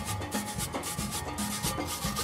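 Steelband music playing: drums and low steelpan notes under a fast, even scratchy percussion stroke, about eight to ten strokes a second.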